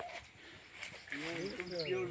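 Faint voices of several people talking, starting about a second in, over quiet outdoor ambience.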